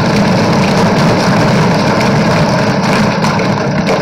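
Many legislators thumping their desks in applause in a large chamber, a loud, dense, steady rumble that stops as the speech resumes.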